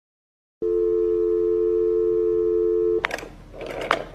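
A telephone dial tone: a steady two-note tone starting about half a second in and cut off by a click about three seconds in, followed by a short rising swish.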